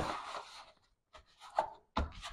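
Soft rubbing and brushing of a foam yoga-mat liner as hands press it into a plastic motorcycle top box, in a few short scrapes and taps.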